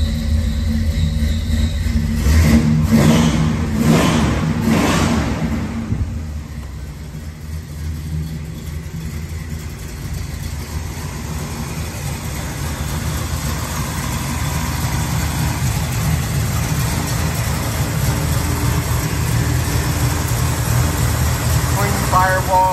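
1970 Oldsmobile Cutlass engine just after starting, revved in a few quick blips in the first five seconds, then settling into a steady idle.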